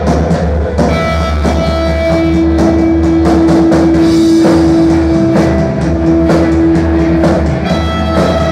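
Live rock band playing loud, with electric guitar, bass guitar and drum kit. A long sustained note holds from about two seconds in until near the end over a steady drum beat.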